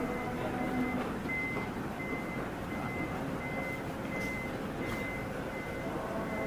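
A vehicle's electronic warning beeper giving short, high, even beeps, about three every two seconds, over a steady background rumble.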